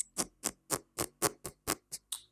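Ticking, about four even, sharp ticks a second, like a clock.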